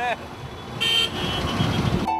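A car horn gives a short toot about a second in, over street and traffic noise.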